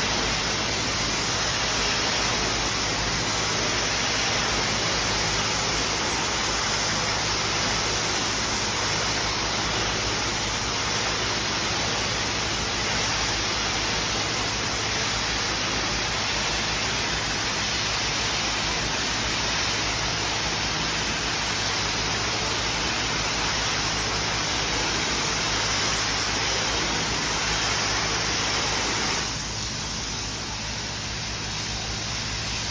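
Pressure-washer wand spraying water into the pile of a soapy wool rug: a steady, even hiss of water spray, with a faint low hum underneath. It eases off slightly near the end.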